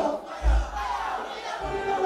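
Concert crowd shouting and cheering during a break in the amplified music, with two deep bass hits from the sound system, about half a second in and again near the end.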